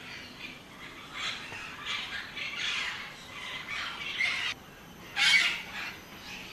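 A bird gives a run of harsh, rough squawks for about four seconds, then one louder squawk about five seconds in.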